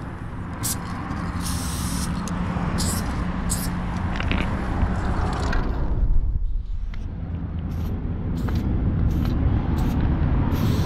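Aerosol spray-paint can hissing in short bursts as letters are painted, with one longer burst about two seconds in, a pause in the middle, then quick bursts near the end. A steady low rumble runs underneath.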